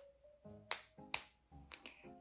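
Quiet background music: soft, short keyboard notes with a couple of sharp, snap-like clicks.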